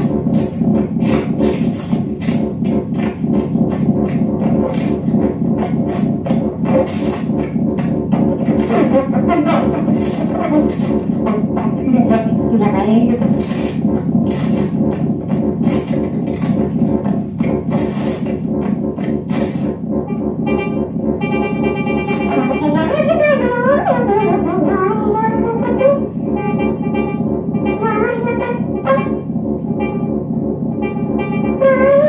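Improvised electronic music of voice and synthesizer: a dense, sustained synth drone of layered steady tones, with regular noisy bursts over it for the first two-thirds. Wordless vocal lines slide up and down in pitch about a third of the way in and again past the two-thirds mark, while a rapid pulsing high tone enters near the end.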